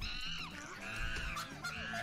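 Three drawn-out, very high-pitched vocal cries that bend up and down, over music with a steady stepping bass line.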